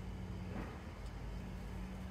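Steady low rumble and hum in the background, with a brief faint sound about half a second in.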